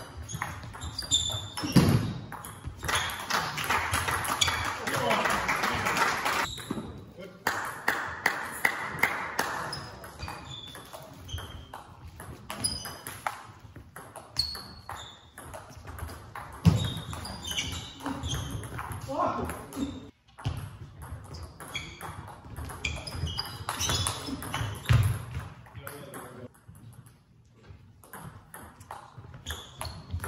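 Table tennis rallies: the celluloid ball clicks sharply off the bats and the table in quick succession, with voices in the hall.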